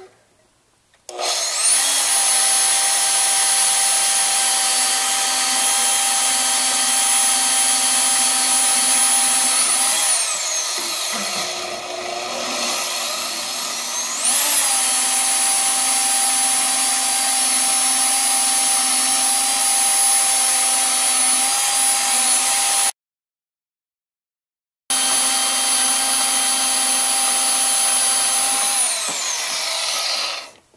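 Milwaukee portable band saw cutting through a mounting ear on a Ford 8.8 IRS differential housing: a loud, steady motor whine with a high, constant tone. It winds down about ten seconds in, rasps quietly for a few seconds and speeds up again. The sound cuts out completely for about two seconds past the middle and winds down near the end.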